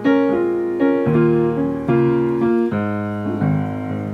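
Piano played in D-flat major: a slow run of full chords over a bass line, about six or seven struck in turn, each left to ring until the next.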